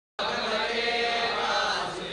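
Several voices chanting together in long held tones, cutting in abruptly at the very start.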